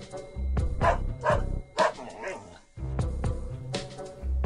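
A dog barking about three times in quick succession over upbeat background music with a steady bass beat.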